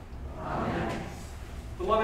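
A short pause in a man's spoken reading in a reverberant church, with a soft, indistinct sound about half a second in; his voice resumes near the end.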